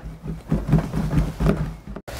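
Hands pressing and rubbing foil-backed sound-deadening mat onto a truck cab's metal floor, giving soft, uneven low thuds and rubbing.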